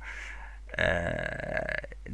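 A man's low, drawn-out vocal sound, about a second long, starting a little before the middle: a hesitation noise between stuttered words.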